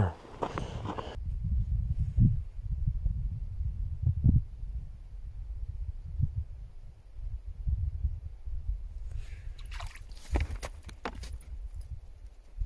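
Low, uneven rumble of wind buffeting the microphone, with a few soft knocks. A short burst of scraping and rustling comes near the end.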